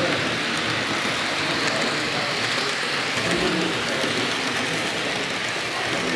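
Steady hiss of hall background noise with indistinct voices murmuring.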